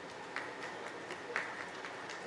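Scattered light applause: a few irregular hand claps, two of them louder about a third of a second and about a second and a half in, over a steady hiss.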